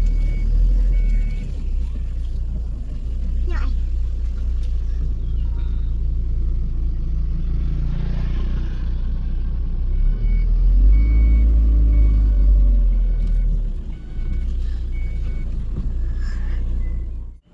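Low rumble of a car heard from inside the cabin, with a repeating electronic beep at two pitches, about one and a half beeps a second. The beeping sounds for the first couple of seconds, stops, then comes back about ten seconds in. It is typical of a parking or proximity sensor with another car close by.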